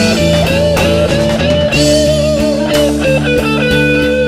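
A live rock band playing an instrumental passage: an electric lead guitar holds long notes with vibrato and slides between them over bass guitar and a drum kit with cymbal hits.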